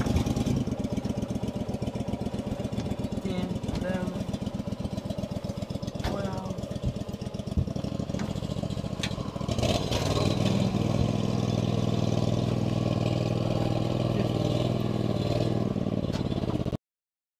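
Small boat's outboard motor running at idle, then speeding up and running louder about nine and a half seconds in. A few brief voices are heard over it.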